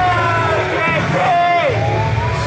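Ringside crowd of spectators, adults and children, shouting and chattering, several voices overlapping with no clear words.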